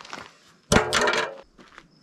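A bucket lid dropped onto the ground: one loud clatter with a brief ring, a little under a second in, fading within about half a second.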